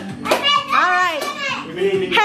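Children's excited voices during a party game, with one long high cry about a second in that rises and falls in pitch. Background music plays underneath.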